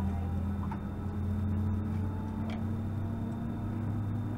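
Steady low drone inside the cabin of an Airbus A320 moving on the ground, with two deep hum tones, the upper one rising slightly in pitch.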